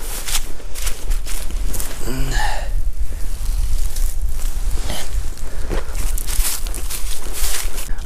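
Footsteps and clothing rustle through dry grass, over a steady low wind rumble on the microphone. A short grunt comes about two seconds in.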